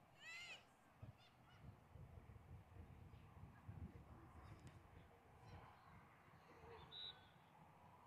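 Faint outdoor field ambience with a low rumble. About half a second in there is one brief honk-like call, and near the end a short faint high tone.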